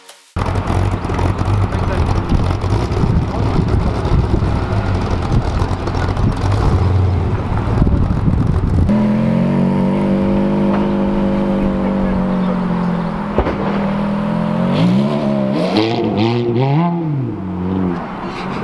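Ferrari F430's 4.3-litre V8 running loud as the car drives off. About halfway through it settles to a steady note, then near the end it is revved several times, the pitch rising and falling quickly.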